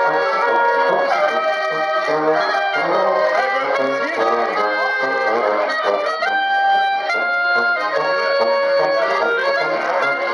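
Live folk band playing a steady tune: accordion in the lead with clarinet, trumpet, strummed guitar and tuba.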